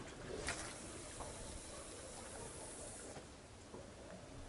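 A surfcasting rod swishing through a long cast about half a second in, then the line hissing off the reel's spool for about two and a half seconds until it stops.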